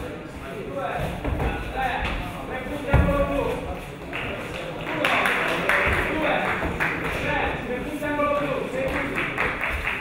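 Several voices calling out over one another around a grappling bout, with a single heavy thump about three seconds in.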